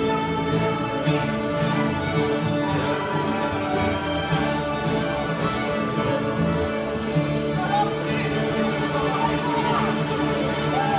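Folk music played on several fiddles together, a steady tune with a regular beat.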